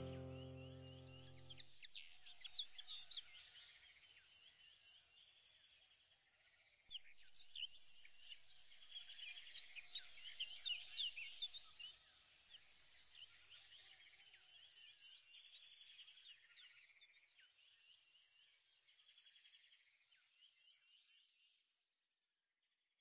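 Faint chirping of many birds, busiest in the middle, fading out and stopping just before the end. A held music chord dies away in the first two seconds.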